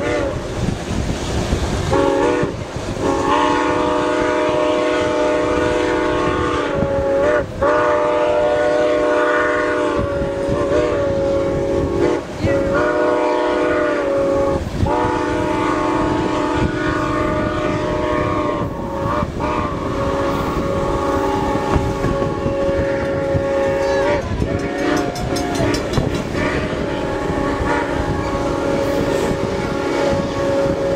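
ATSF 3751 steam locomotive's chime whistle sounding a series of long blasts, separated by brief breaks, with the pitch bending as each blast starts and stops. Underneath runs the steady rumble and clack of the moving train's wheels.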